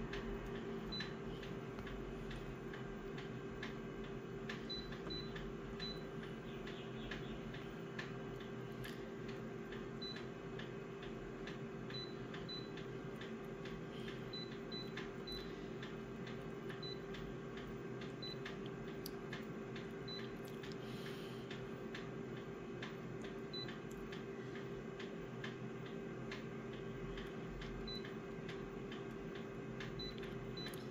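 Office copier's steady idling hum, with short high key beeps at irregular intervals and light taps as its touchscreen is pressed.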